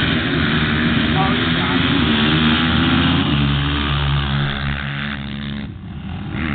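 Single-cylinder four-stroke engines of sand-drag ATVs, including a Honda TRX450R, running at high revs as the quads launch and accelerate down the strip. The engine pitch changes about three seconds in.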